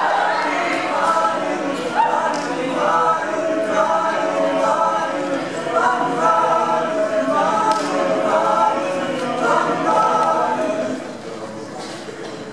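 A high-school a cappella group singing in close harmony, several voices at once with no instruments. The singing stops near the end.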